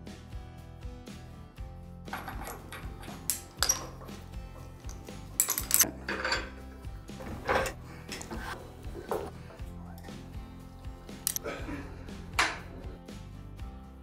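Irregular metal clinks and clanks from telescope mount hardware, with the counterweight and bolts being fitted, starting about two seconds in, over background music.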